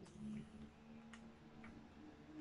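Near silence over a steady low hum, with a few faint clicks of whiteboard markers being handled, two of them about half a second apart.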